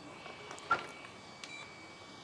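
Pistol-grip RC radio transmitter being handled, faint: a sharp click under a second in, then a short high beep about one and a half seconds in.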